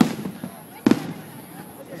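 Two aerial firework shells bursting, two booms just under a second apart, each trailing off in a short echo.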